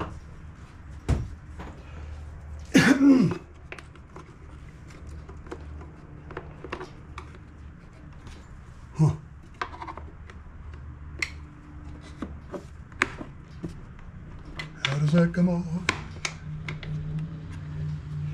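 Scattered small clicks, taps and clinks of a screwdriver and hand tools working at a push mower's metal and plastic parts, over a steady low hum. A loud mumbled vocal sound comes about three seconds in, and more muttering near the end.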